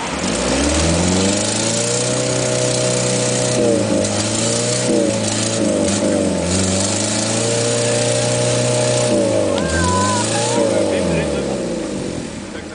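A 4x4's engine revving hard and held at high revs as it ploughs through deep muddy water, with water churning and splashing. The revs dip briefly about nine and a half seconds in, climb again, then ease off near the end.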